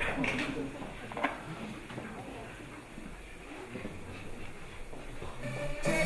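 Faint voices and a few light knocks in a large hall, then electronic dance music cuts in loudly just before the end.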